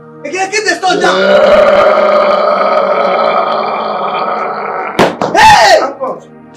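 A man's voice in one long, held, strained cry lasting about four seconds, then a sharp knock about five seconds in and a short loud shout with a rising-then-falling pitch.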